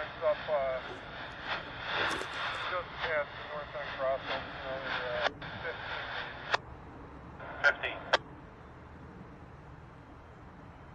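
A voice over a railroad radio scanner: clipped, narrow-sounding speech for about five seconds that cuts off abruptly. A few sharp clicks follow near the seven- and eight-second marks. A steady low rumble from the slowly approaching diesel locomotives sits underneath.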